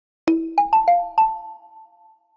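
Short logo jingle: five quick struck, pitched notes in the first second and a quarter, ringing on and fading out together.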